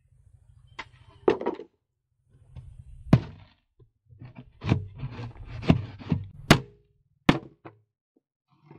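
Plywood strips knocking against the sides of a plywood box as they are set into place by hand: a string of separate sharp wooden thunks, about eight in all, the loudest in the second half.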